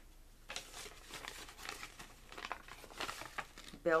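A paper mailing envelope crinkling as it is handled: a run of irregular crackles. The envelope is already torn.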